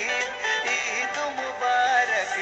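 Bangla Eid song: a sung vocal melody with wavering, ornamented pitch over steady instrumental backing.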